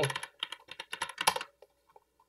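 Typing on a computer keyboard: a quick run of keystrokes for about a second and a half, then a few faint clicks.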